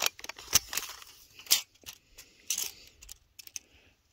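Irregular light clicks and crunches of a steel tape measure being pulled out and pushed into deep snow.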